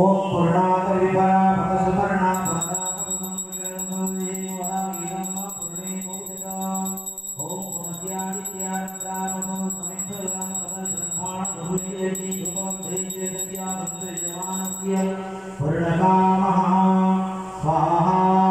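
Hindu havan mantras chanted by priests, the voices held on a steady pitch, with brief breaks about seven seconds in and again near the end. A thin, high, steady ringing runs beneath the chanting through most of the middle.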